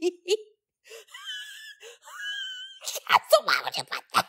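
A person's voice making two long, very high-pitched, wavering wailing sounds, then breaking back into speech or laughter near the end.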